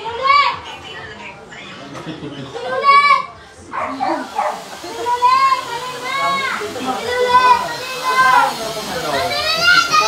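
Children's high-pitched voices shouting and squealing in play, in a string of short calls that rise and fall, over background chatter.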